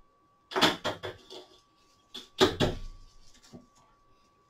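Dry, stiff broomcorn stalks rustling and rattling as they are handled and pressed into the broom bundle, in two short bursts about two seconds apart.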